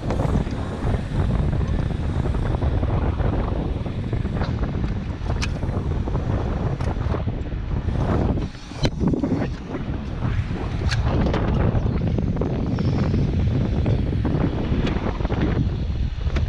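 Wind buffeting a helmet-mounted action camera's microphone, a dense, fluttering low rumble, broken by a handful of sharp light clicks and a short lull a little past halfway.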